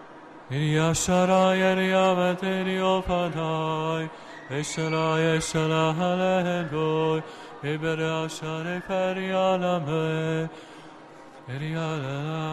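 A man singing in tongues: wordless syllables chanted on a few steady held notes in short phrases, with a pause near the end.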